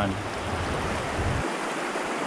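Steady rush of river water running through rapids and white water, an even hiss. A low rumble beneath it cuts off abruptly about one and a half seconds in.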